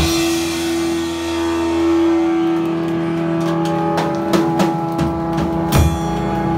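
Live rock band with an electric guitar chord struck hard and left ringing out, held steady after a crash. A few drum and cymbal hits come in near the end.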